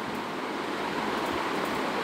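Steady, even background hiss of room noise with no other event.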